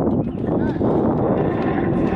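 Hand cranks of an outdoor arm-pedal exercise station being turned, a steady mechanical whirring noise.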